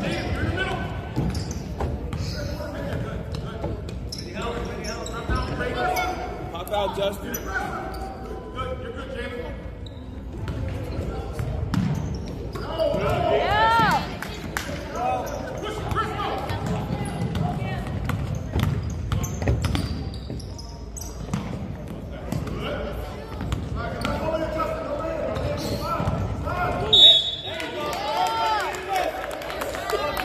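Basketball bouncing and dribbled on a hardwood gym floor, echoing in a large hall, with indistinct spectator voices and squeaks from players' shoes on the court. A brief sharp high note stands out near the end.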